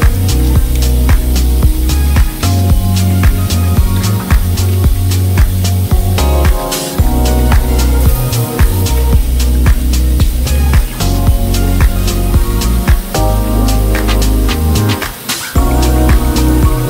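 Background music with a steady beat and a heavy bass line.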